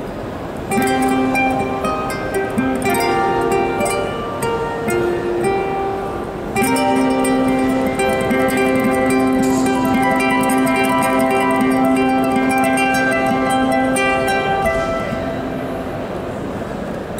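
Amplified ukulele played fingerstyle, with plucked melody notes layered over looped parts from a loop pedal. A new phrase comes in loudly about a second in and again about six seconds in, over a long held low note that eases off near the end.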